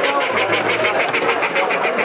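A bird calling in a fast run of short, high repeated notes, about eight a second, over the murmur of crowd chatter in a hall of caged poultry.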